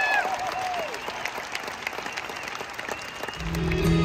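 Arena audience applauding as a song's last held notes die away in the first moment. About three and a half seconds in, a rock band comes back in loudly with heavy low bass and electric guitar to start the next number.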